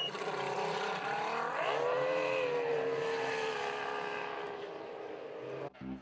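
Racing powerboat's outboard engine running hard, its pitch climbing about one and a half seconds in, then holding and easing down slightly before it cuts off just before the end.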